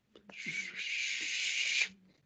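A person's long breathy hiss, like air pushed out through the teeth or a drawn-out "shhh", lasting about a second and a half.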